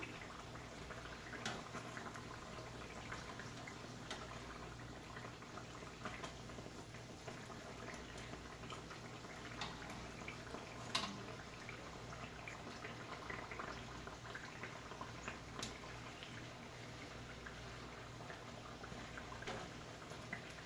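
Pastries shallow-frying in hot oil in a wok: a faint, steady sizzle with scattered crackles, and now and then a light click of metal tongs against the pan.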